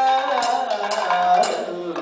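Kathakali vocal music: a male singer holds long sung notes, shifting pitch partway through, with bright metal strikes of small hand cymbals keeping time about once a second.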